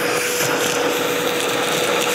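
Milwaukee M18 cordless backpack vacuum running at full suction, a steady rush of air with a steady whine, as its crevice nozzle sucks up loose screws.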